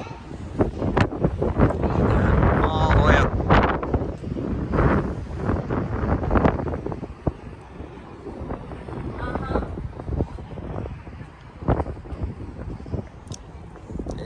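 Wind buffeting the microphone in gusts, heaviest in the first half and easing after about seven seconds, with faint voices underneath.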